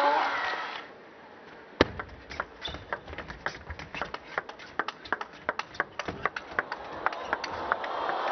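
Table tennis ball clicking in a fast rally: sharp knocks of the celluloid-type ball on bats and table, two to three a second and irregular. Crowd noise fades out at the start and rises again near the end as the point is won.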